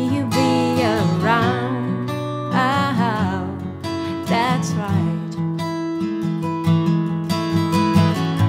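A Martin 00-18 acoustic guitar being strummed, holding chords, with short wavering melodic phrases above them.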